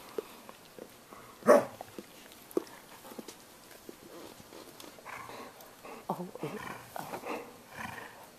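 A dog growling in short, broken bouts, mostly in the second half, aimed at a smaller dog. There is one loud, sharp sound about a second and a half in.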